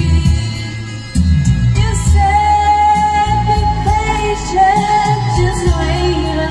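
A woman singing karaoke into a microphone over a pop backing track with a steady beat, holding one long note with a slight waver from about two seconds in.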